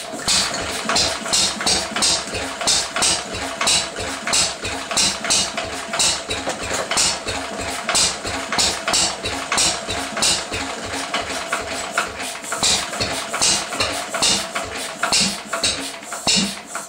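1937 Lister D 2 hp single-cylinder stationary engine running roughly after years unused, firing in uneven beats with some sharp, louder bangs among them. It runs poorly and backfires, and the owner wonders if the timing is off.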